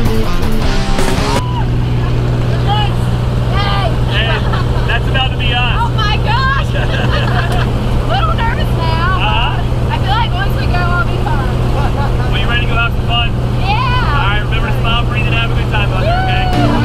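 Steady low drone of a small jump plane's engine and propeller, heard inside the cabin, with excited voices shouting over it. Music plays for about the first second and a half, then cuts off.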